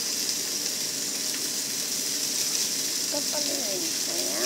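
Whole capelin frying in hot oil in a pan: a steady sizzle, with a voice briefly heard near the end.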